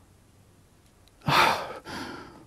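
An elderly man's audible breath: a sharp intake about a second in, then a softer breath near the end.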